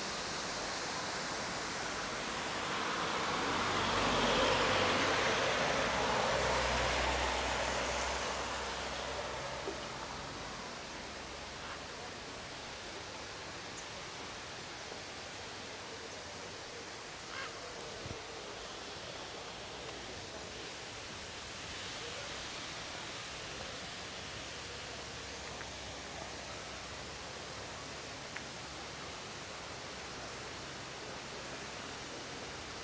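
A car passes on the wet road, its tyre noise swelling and fading over the first several seconds; after that a steady outdoor rushing noise remains, with a few faint clicks.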